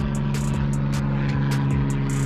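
Airplane passing overhead, a steady drone made of several even low tones, with a few light clicks over it.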